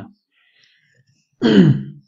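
A person clearing their throat once, about a second and a half in, after a short silence.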